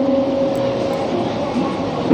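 A boy's held sung note in an unaccompanied naat, amplified through a microphone and PA, ends at the very start, with a faint tail lingering for about a second. After it comes a pause filled with steady, noisy hall background.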